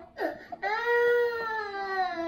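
A toddler crying: a quick gasping breath in, then one long wailing cry that sags slightly in pitch.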